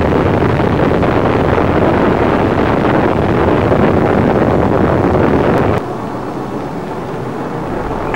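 Saturn IB rocket's eight kerosene-fuelled H-1 first-stage engines in flight just after liftoff: a loud, steady rush and rumble. About six seconds in it drops to a quieter, thinner sound with less low rumble.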